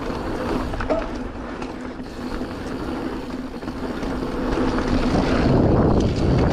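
Mountain bike rolling down a packed-dirt flow trail: tyres running over dirt and leaves with a steady rush of riding noise, getting louder near the end as the bike picks up speed.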